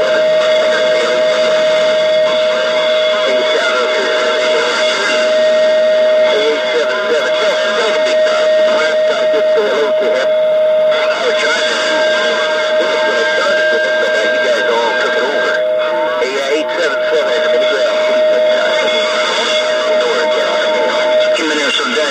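Galaxy CB radio's speaker carrying a distant station's transmission: garbled voice under heavy static, with a steady whistle tone running through it that cuts off near the end.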